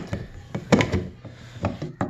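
Plastic screw-on hatch cover of a kayak's watertight storage compartment being handled and worked loose from its rim: a few hollow plastic knocks with scraping between them, the loudest about three-quarters of a second in.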